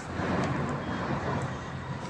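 Steady outdoor background noise with a low rumble throughout.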